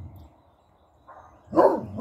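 A dog barking: one sharp bark near the end, with the next bark of a pair just starting as it closes.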